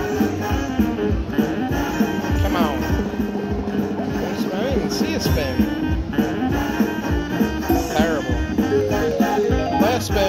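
Slot machine playing its bonus-round game music, with quick sliding-pitch sound effects a few times as the free-game reels spin and wins are added.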